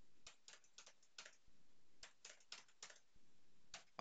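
Faint computer keyboard typing: a run of irregular, quick keystrokes as a short line of characters is entered.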